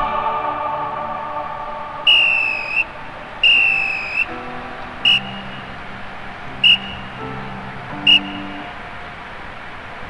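Recorded choral music fading out, then a drum major's whistle blown in a signal of two long blasts and three short ones, each with a slight drop in pitch at the end.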